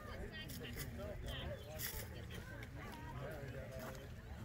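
Faint background chatter of several voices talking at once, with a few light clicks.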